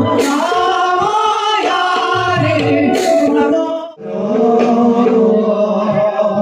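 Live Bhaona devotional music: voices singing together with percussion accompaniment, including bright cymbal-like strikes near the start and about three seconds in. The music breaks off sharply about four seconds in and starts again at once.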